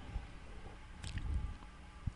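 Quiet pause with faint handling noise close to a handheld microphone: a few soft clicks and rustles about a second in, over low room tone.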